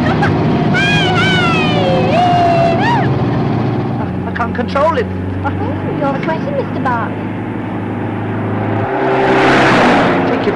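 Car engine running hard at a steady speed, its note shifting about four seconds in and falling away near the end, with a rising rush of noise in the last second.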